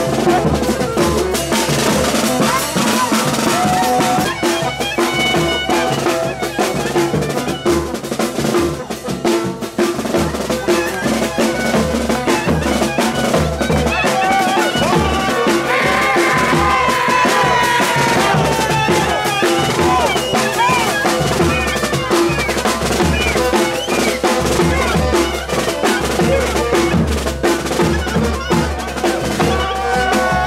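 Live street band: a saxophone plays a bending, ornamented melody over a steady, driving beat of two large double-headed bass drums struck with sticks.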